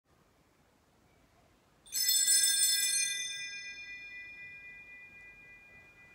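A small bell struck once about two seconds in, ringing with several high tones that fade slowly over the following seconds. At the opening of a Catholic Mass, this bell marks the priest's entrance and the start of the service.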